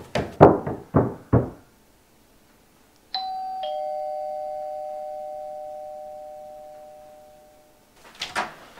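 About five footsteps thudding up wooden stairs in the first second and a half. Then a two-tone doorbell chime, a higher note followed half a second later by a lower one, both ringing on and slowly fading: a visitor ringing at the front door.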